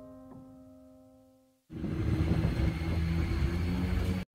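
Soft background music fading away, then a sudden cut to street sound about two seconds in: a steady low vehicle engine rumble.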